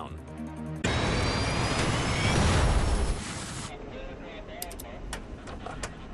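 Jet engine noise with a rising whine, starting abruptly about a second in and dropping away after about three seconds, as the engine surges under ingested volcanic ash. Background music runs underneath.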